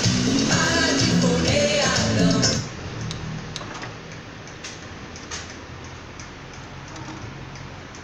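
Song with singing playing from the CD changer, cutting off suddenly about two and a half seconds in. Then the Denon DCM-280 five-disc changer's drawer and disc-loading mechanism make scattered light clicks over a low hum as it closes and moves to the next disc.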